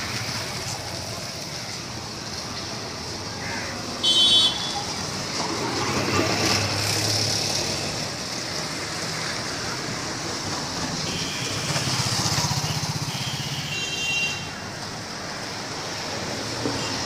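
Street traffic of motorcycles and cars passing, with engines running. A short vehicle horn toot about four seconds in is the loudest sound, and another horn sounds near the end.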